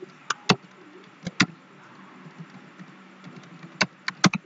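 Computer keyboard keys being pressed: a few separate sharp clicks, two quick pairs early and a single click near the end after a long pause, over a faint steady hum.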